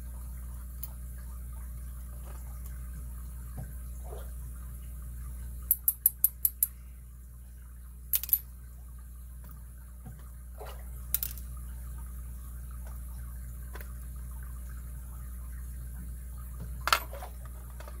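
Small metal lock parts clicking against a pin tray and tools as a disassembled lock is sorted: a quick run of about six clicks about six seconds in, then a few scattered single clicks. A steady low hum runs underneath.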